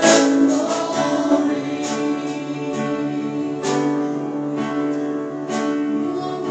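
Live church worship band playing a slow song, with singing over the band. A strike, likely a drum or cymbal, marks the beat about every two seconds.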